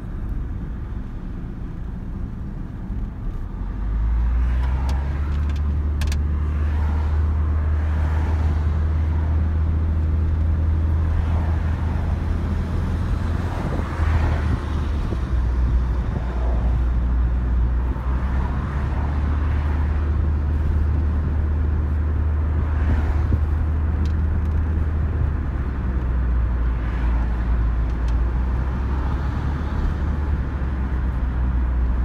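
Road noise inside a moving car's cabin: a steady low rumble that grows louder about four seconds in.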